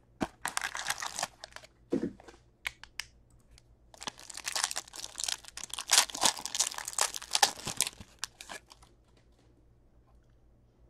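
A Black Diamond hockey card pack being opened by hand: a short burst of crinkling, a thump about two seconds in, then a longer stretch of wrapper crinkling and tearing from about four seconds to near the end.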